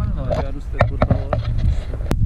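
Indistinct talking over a steady low rumble of wind buffeting the camera microphone.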